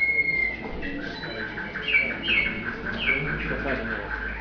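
Canary singing: a long, high whistled note at the start, then a fast run of repeated notes broken by several short falling slurs.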